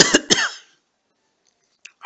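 A man coughing twice in quick succession, clearing his throat.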